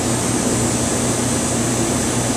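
Steady rush of a commercial kitchen's ventilation, likely the exhaust hood fan, running with a low hum underneath.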